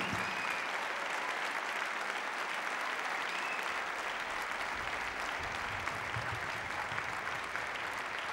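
Audience applauding steadily, a dense even clatter of many hands clapping.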